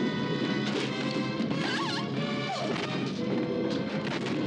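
Film soundtrack of held, tense music with several sharp crashes and knocks over it, and a brief wavering pitched sound about two seconds in.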